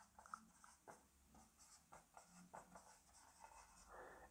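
Faint scratches and squeaks of a marker pen writing on a whiteboard, in a few short strokes.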